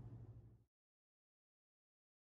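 Near silence: a faint low room hum fades out within the first second, followed by dead silence.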